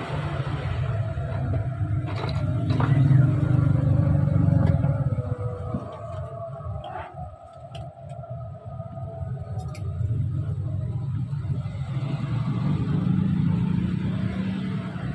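Low rumble of passing motor traffic, swelling about two to five seconds in, fading, and building again near the end, with a few light clicks of fan-motor wires and parts being handled.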